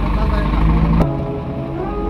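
Heavy truck diesel engines idling with a steady low rumble and faint voices. About a second in, a sharp click cuts the rumble away, leaving a quieter background with steady tones.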